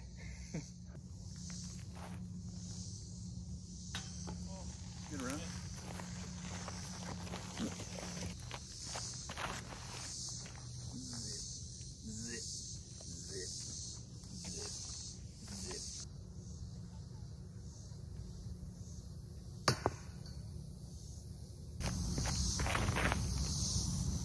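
Outdoor chorus of insects chirping in a steady, evenly pulsing drone, over a low rumble. There is a single sharp click about twenty seconds in, and the whole sound gets louder near the end.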